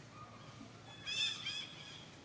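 Baby macaque giving two short, high-pitched cries about a second in.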